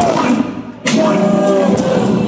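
Live hip-hop performance recorded from the crowd on a phone: a loud beat with rapped vocals. The music dips briefly about half a second in, then comes back in with a hit just under a second in.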